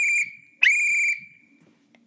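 A coach's whistle blown in two short blasts, each a steady high pitch with a quick rise at its start. The second blast trails off more slowly.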